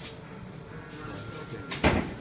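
Aluminium foil crinkling as a burrito is rolled up in it by hand. A sharp thump comes near the end.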